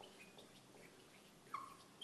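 Faint, short squeaks of a marker writing on a whiteboard, the loudest about one and a half seconds in.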